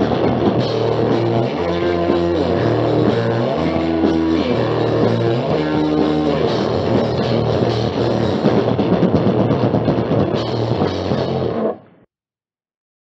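Thrash/punk band playing a home-recorded song on cassette, with electric guitar and drum kit. The music cuts off abruptly near the end.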